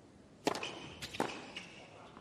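Tennis ball struck by racket: a serve hit about half a second in and the return a little after a second in, with a fainter knock after it. Short high shoe squeaks on the hard court come between the shots.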